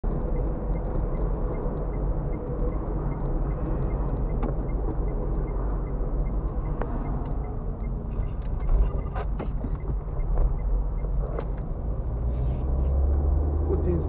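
A car driving, heard from inside the cabin: a steady low rumble of engine and road noise. A few sharp clicks come in the second half, and the rumble grows heavier near the end.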